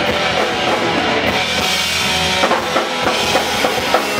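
Punk rock band playing live: electric guitars, electric bass and a drum kit with steady drum hits, in an instrumental passage without vocals.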